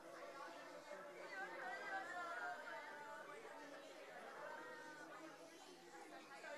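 Faint, indistinct chatter of many people talking at once, their voices overlapping so that no words stand out.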